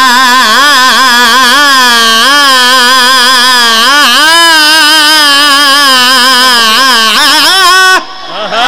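A young man's solo voice holding one long, ornamented sung line in a qasida recitation, amplified through a microphone and PA, wavering and gliding in pitch without words.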